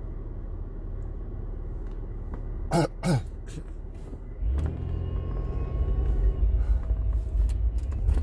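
Low rumble of a car's engine and road noise heard from inside the cabin, with two short coughs about three seconds in. In the second half the rumble grows louder and rougher.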